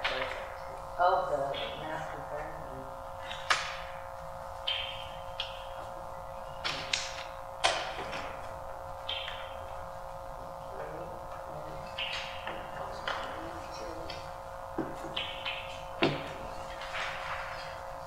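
Paper sheets and booklets handled at a table: scattered short rustles and light knocks, the sharpest at about 3.5, 8 and 16 seconds, over a steady hum.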